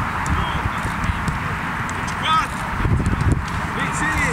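Football training on a grass pitch: irregular thuds of footballs being kicked and players' footfalls, with distant shouting voices.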